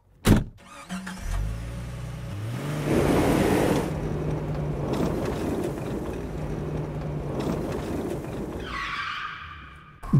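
Car engine sound effect: a sharp thump, then an engine starting off and picking up, its pitch rising in steps, running steadily and fading out near the end with a brief rising higher tone.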